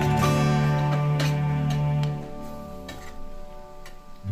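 Background music: soft instrumental with plucked-string notes over a held low note, growing quieter about halfway through.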